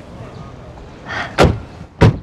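A door being shut: a short rustle of movement, then one sharp thud about one and a half seconds in.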